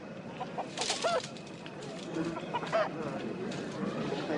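Chickens clucking: a few short calls about a second in and again near three seconds, over a low background of outdoor ambience.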